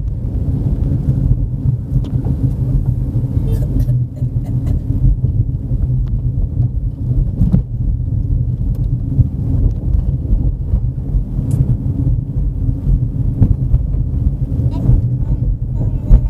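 Steady low rumble of a car driving on a rough road, heard from inside the cabin, with a few brief knocks.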